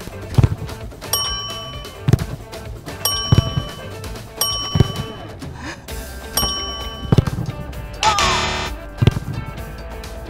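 Background music with a series of dull thuds from footballs being struck at goal, about six in all, and bright chime sound effects ringing between them. A short rushing burst comes a little after eight seconds.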